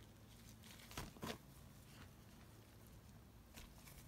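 Faint rustling of dry coconut coir and paper bedding being stirred by a gloved hand, with two brief, louder rustles about a second in.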